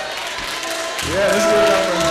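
A man's amplified singing voice slides up about a second in and holds one long steady note of a Yoruba hymn line, over the murmur of audience voices.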